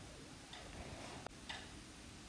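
Faint ticking about once a second, with one slightly sharper click in the middle, over quiet room tone.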